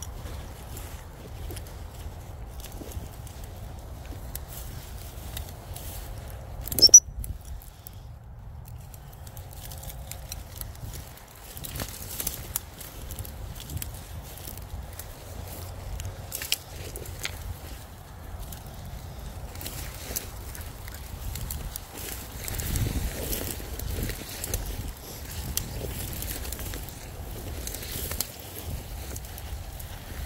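Footsteps and rustling through long, rough grass, with scattered crackles of brushed stems over a steady low rumble. About seven seconds in, a short, sharp, rising high-pitched squeak stands out as the loudest sound.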